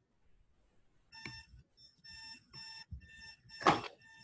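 An electronic beeping alarm-like tone sounding in a run of short repeated pulses from about a second in, followed by a brief louder sound near the end.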